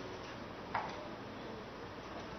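Steady background hiss with a single short, sharp click about three quarters of a second in.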